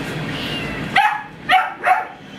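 A dog barking: three short barks, each falling in pitch, in the second half.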